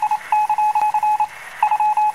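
Morse-code style beeping: short electronic beeps at one steady pitch, tapped out rapidly in three runs with brief gaps between them. It is used as a news sting between stories.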